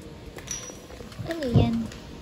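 A short wordless human vocal sound in the second half: the pitch slides down, then holds briefly. A loud low bump comes at its loudest point.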